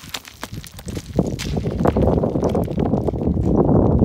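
A large rock tumbling down a grassy, rocky hillside: a rumble of irregular knocks and thuds that starts about a second in and grows steadily louder as it comes closer.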